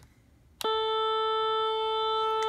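Seiko ST1000 chromatic auto-tuner's reference-sound speaker switching on with a click about half a second in, then sounding a steady, kind of loud electronic reference tone at one unchanging pitch.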